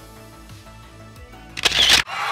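Soft background music with steady low notes, then near the end a loud, short camera-shutter sound effect.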